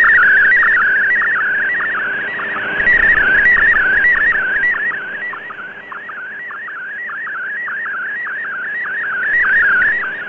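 Shortwave radio picture transmission in MFSK64 mode received off the air: a single warbling tone that wanders and dips in pitch a few times a second as the image's pixels are sent, over shortwave static hiss. The signal swells and fades with propagation, dropping back at the very end.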